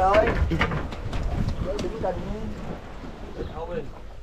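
Voices of people on the boat, with brief speech or laughter, over a steady low rumble of wind and sea noise.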